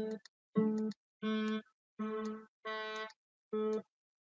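Homemade Arduino MIDI controller playing synthesized instrument sounds: the same note sounded six times in short separate notes, each in a different instrument voice as its 120 instruments are stepped through.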